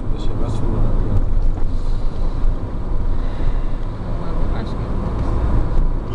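Road and wind noise inside a moving car at highway speed: a steady, heavy low rumble of tyres and air against the car.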